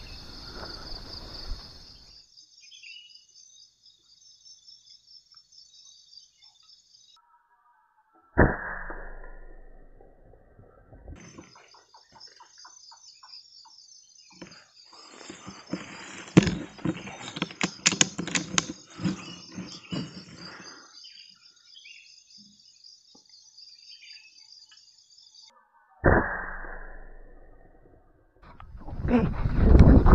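Night insects, crickets, chirping in a steady pulsing high trill that cuts off abruptly twice. Twice there is a sudden thump followed by fading noise, and in the middle a burst of rustling and sharp knocks in the brush.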